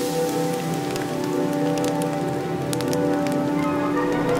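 Dry leaves catching fire and crackling: a patter of small sharp crackles over sustained background music.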